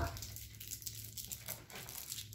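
Faint, irregular crinkling of a crumpled wrapper being handled, over a low steady hum.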